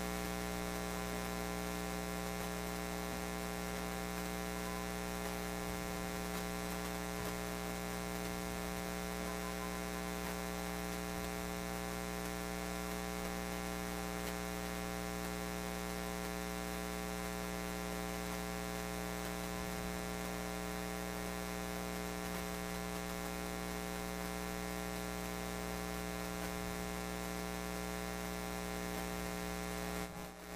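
Steady electrical mains hum and buzz in the broadcast audio feed, a fault the broadcasters call buzzing noises. It holds one unchanging pitch throughout.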